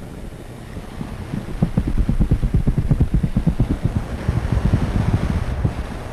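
Low, rumbling buffeting noise on the microphone, like wind on the mic, made of rapid irregular thumps that grow louder about a second and a half in.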